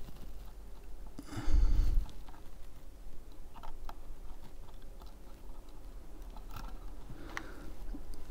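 Faint small clicks and rustles of fingers handling a wire coil and a metal RTA build deck, with a brief louder bump about one and a half seconds in.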